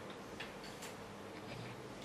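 Quiet room tone with a few faint, irregularly spaced ticks of a pen on a writing surface as an equation is being written.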